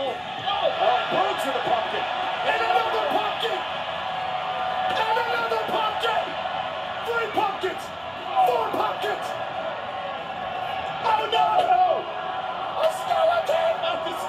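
Televised wrestling brawl played through a TV speaker: arena crowd noise and shouting voices, with a few sharp hits of blows landing.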